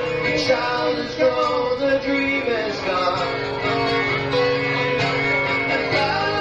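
A live band playing, with sustained, sliding lead notes over guitar and band. The recording is from a cassette tape.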